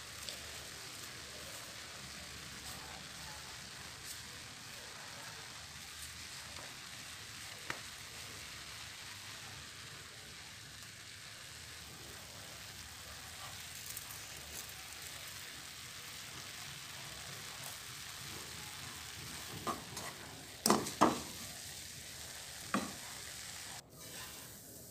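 Minced meat for a sambuus filling sizzling steadily in a non-stick frying pan while a wooden spatula stirs it. A few sharp knocks sound near the end.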